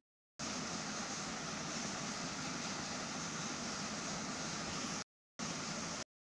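Steady hiss of background noise with no speech or tones, which cuts out to dead silence at the very start and again for a moment about five seconds in, then resumes abruptly.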